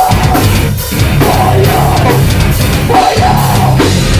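Heavy metal band playing live and loud, with distorted electric guitars, bass guitar and a drum kit.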